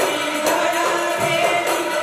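Group of men singing a Goan ghumat aarti in chorus, accompanied by ghumat clay-pot drums and jingling hand cymbals, with a strike roughly every half second.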